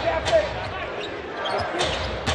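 Basketball dribbled on a hardwood arena court: a few sharp, irregular bounces over background voices.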